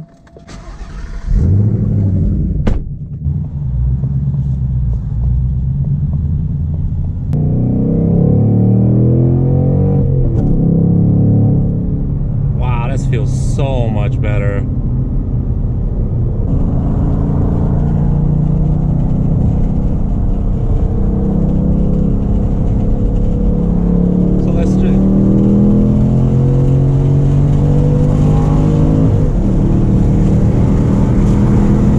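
2019 Ford Mustang Bullitt's 5.0-litre V8, heard from inside the cabin, pulling away and accelerating through the gears of its manual gearbox. The engine note climbs and drops back at each upshift, several times.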